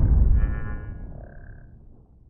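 Tail of an edited-in sound effect: a low rumble fading away, with a brief buzzy high tone about half a second in and a short steady high tone around a second and a half in.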